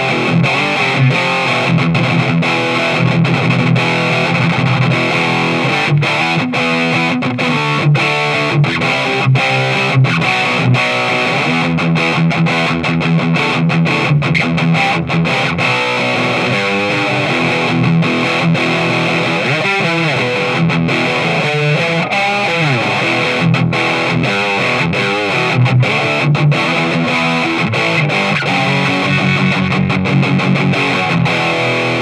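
Electric guitar played through the E-Wave DG50RH all-tube amplifier head on its high-gain second channel: heavy, distorted metal riffing, very bass heavy. A few quick pitch slides down and up come about two-thirds of the way in.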